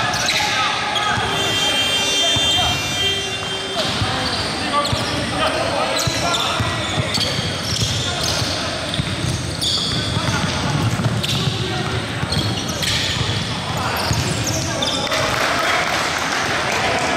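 A basketball being dribbled on a hardwood gym floor during a game: repeated short bounces over the running play, with players' voices calling out.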